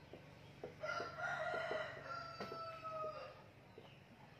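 A rooster crowing once, a long call of about two seconds held fairly level and dipping slightly at the end.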